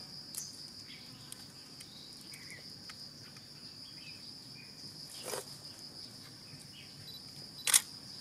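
A steady high-pitched insect drone, cricket-like, with faint chirps, broken by two sharp clicks about five seconds in and just before the end, the second the loudest sound.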